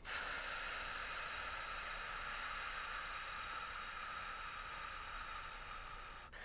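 Steady electronic hiss, mostly high-pitched, that switches on suddenly and holds evenly, fading only slightly; no voice over it.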